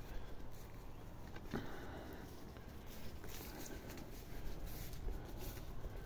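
Faint footsteps of someone walking through garden grass, a few soft steps over low outdoor background noise.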